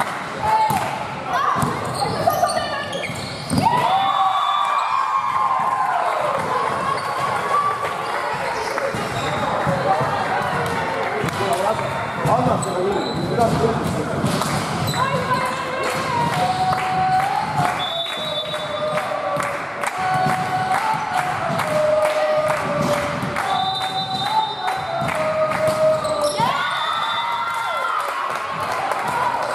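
A volleyball rally in a sports hall: a serve, then repeated hits and bounces of the ball, with players and spectators shouting and calling throughout.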